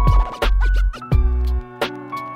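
Hip-hop beat with no rapping: kick drums and a bass that slides downward, with a quick run of turntable scratches in the first second.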